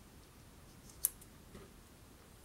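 Faint handling of a paper strip on a table, with a single sharp click about a second in.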